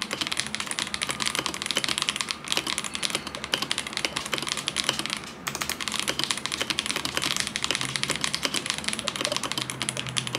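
Fast continuous typing on a KBD Craft Adam, a Lego-built mechanical keyboard with linear switches: a dense stream of poppy keystroke clacks, with a brief pause about five seconds in. Its stabilizers are not yet lubed and sound a bit quacky or loose.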